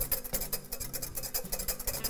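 Wire whisk beating egg yolks and butter in a glass Pyrex bowl, quick, even strokes scraping and tapping against the glass as the butter is whisked into the eggs to emulsify a béarnaise sauce.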